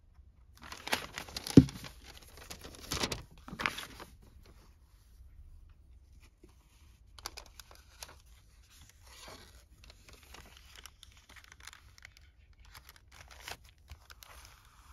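Paper envelopes rustling and crinkling as they are handled, folded and pressed into place, with a single sharp thump about a second and a half in. The rustling is busiest in the first few seconds, then goes on more quietly in scattered bursts.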